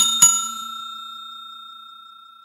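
Notification-bell sound effect of a subscribe-button animation: two quick dings about a quarter second apart, then a ringing tone that fades away slowly.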